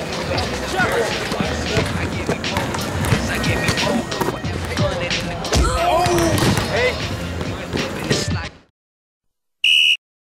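Basketball game in a large gym: a ball bouncing on the hardwood floor, shoes on the court and indistinct player voices, all echoing. The sound cuts off about 8.5 seconds in, and a short high-pitched tone sounds near the end.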